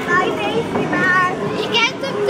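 Children's high voices calling out and chattering, several overlapping at once over a steady background murmur.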